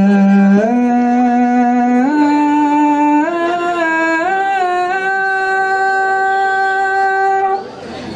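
A male religious chanter (mubtahil) performing an ibtihal into a microphone. His voice climbs in steps over the first five seconds, then holds one long high note, with a short break for breath near the end.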